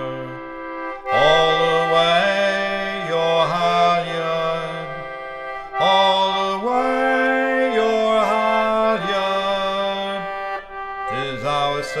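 A vintage 48-key treble English concertina, a Wheatstone 'Pinhole' Aeola, playing sustained chords in phrases. New chords come in about a second in and again near six seconds.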